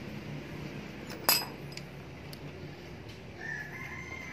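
A rooster crowing faintly in the background near the end. About a second in comes one sharp metallic clink, the loudest sound, over a low steady hum.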